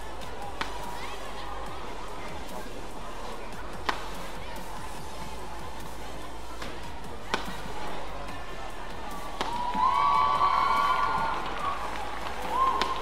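Badminton rackets striking a shuttlecock in a doubles rally: a few sharp, widely spaced hits over a steady arena hum. Near the end comes a loud, sustained shout.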